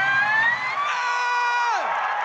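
A person's long, high 'ooh' exclamation that rises, holds, then drops off near the end, over a crowd cheering and clapping.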